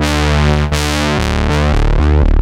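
Synthesizer playing sustained chords over a bass line whose notes change quickly from about a second in, with a sweeping high end. It runs through a Neve-style preamp plug-in with its high EQ turned up, a boost that is said to stay smooth rather than harsh.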